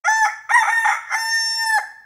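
A rooster crowing once: a few short notes, then one long held note that cuts off just before the end.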